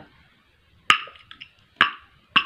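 Two sharp clicks of hard plastic parts being pushed together, about a second apart, as the pieces of a plastic tap attachment are fitted.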